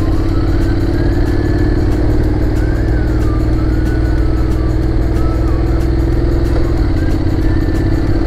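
Motorcycle engine running steadily at cruising speed, heard from on board the bike. Its note drops slightly near the end.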